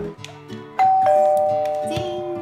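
A doorbell's two-note ding-dong chime, a high note a little under a second in followed by a lower note, both ringing on and fading slowly, over background music.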